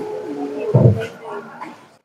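A person's drawn-out voiced sound, held on one steady pitch like a hum, then a short low thump a little under a second in.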